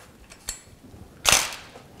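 Handling noise from the metal precision triangle and its pins on the workbench: a faint click, then a short sharp clack a little over a second in.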